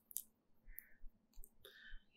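Near silence in a pause between spoken phrases, broken by a few faint, short clicks.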